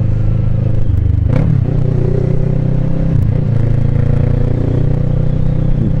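Motorcycle engine running steadily at low speed in slow traffic, with a brief dip and recovery in engine pitch about a second and a half in and another about three seconds in.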